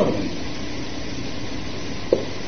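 Steady recording hiss with a faint low hum, the background noise of the sermon recording, with no speech.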